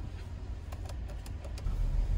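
Car cabin noise as the car pulls away: a low engine and road rumble that grows louder near the end, with a few faint clicks about halfway through.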